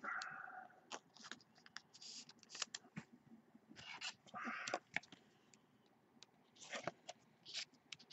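Faint handling of baseball trading cards: scattered light clicks and rustles, with two brief scraping sounds near the start and about halfway through, as a card is slid into a clear plastic holder.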